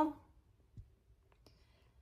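A few faint, short clicks and a soft knock in a quiet room, from the camera being handled and repositioned by hand. A spoken word trails off right at the start.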